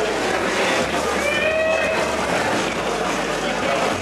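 Spectators at a kickboxing fight, a steady din of voices, with one voice calling out a little over a second in.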